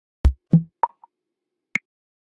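A short run of sharp percussive plops, four hits in under two seconds, each higher in pitch than the one before: a deep thump first, a bright click last.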